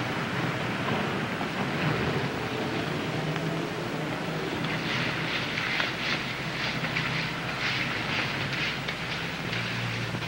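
Steady hiss and low hum of an old TV soundtrack, with a run of soft, irregular scratchy sounds in the second half.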